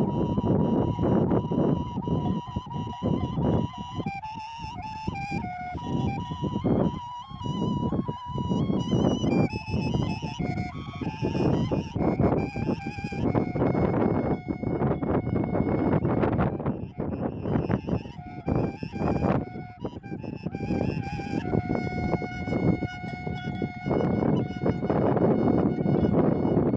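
Shepherd's kaval, a long wooden end-blown flute, playing a slow melody of held notes with trills and ornaments. A strong breathy, rushing noise sits beneath the tune.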